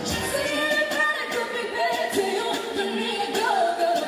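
A woman singing a pop song live into a handheld microphone, amplified through PA speakers over a pop backing track.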